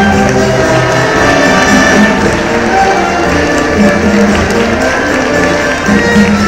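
A concert band of clarinets, saxophones, brass and sousaphone, with congas and drums, playing a tune together.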